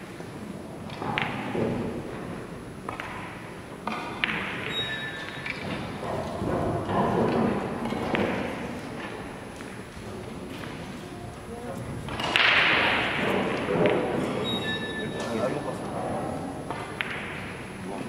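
Large billiard hall ambience: scattered knocks and thuds with short ringing clacks of carom balls and cues from nearby tables, over a murmur of voices. A louder, rushing burst of noise comes about twelve seconds in.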